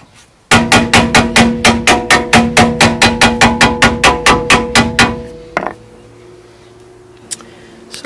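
Hammer tapping rapidly and evenly on the Audi A3's rear brake disc, about six blows a second for some five seconds, with the metal ringing under each blow. The tapping is meant to loosen a rusty, binding rear brake. One last knock follows.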